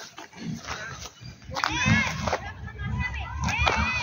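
Children's voices calling and shouting, starting about one and a half seconds in, with low thumps of handling noise beneath.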